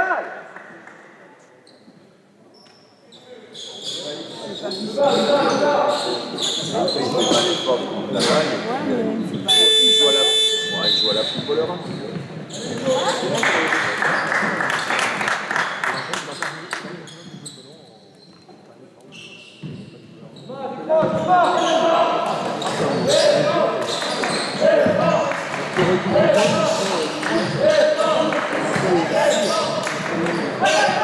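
Basketball game sounds echoing in a large gym: a ball bouncing, shoes on the court and players' voices calling out. About ten seconds in, a buzzer sounds for about a second and a half.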